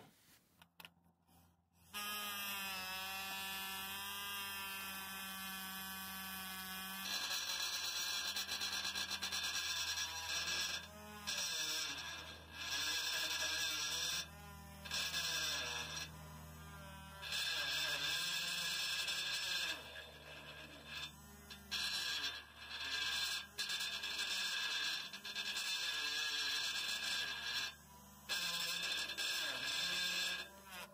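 An electric etching tool buzzing as its tip engraves a VIN into the painted steel shell of a catalytic converter. It starts about two seconds in and cuts out briefly many times as the tool is lifted between strokes.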